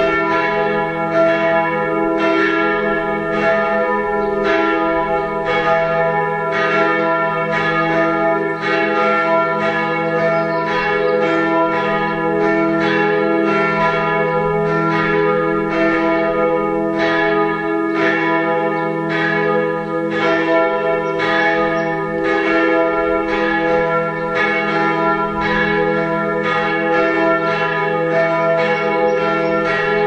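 Växjö Cathedral's tower bells swinging and ringing in a steady, even run of strokes, about three every two seconds, with the bells' deep hum carrying on between strokes.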